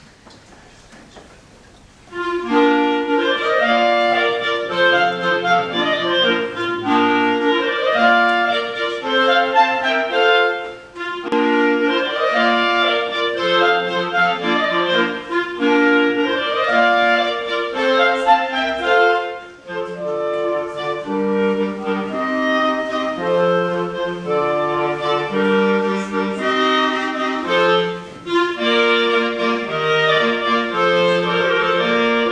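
A small ensemble of student clarinets starts playing about two seconds in, several parts moving together in a classical-style piece, with short breaks near the middle.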